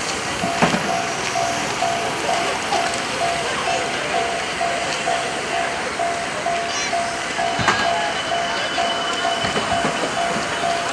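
Electronic railway level-crossing warning bell beeping steadily at a single pitch, about two to three beeps a second, over a steady noisy background, with a couple of sharp knocks.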